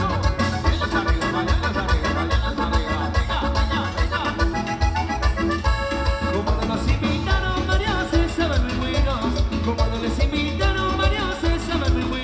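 Live tropical dance band playing an instrumental passage between verses, with a steady bass and drum beat under a lead melody line.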